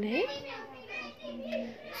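Quiet voice sounds, speech-like, with one rising in pitch just after the start.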